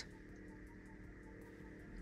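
Faint steady hum from the shooting-star (meteor) projector of a fibre-optic starlight roof, mounted in the car's headlining, with a light regular pulse in it. It is an annoying running noise from the projector.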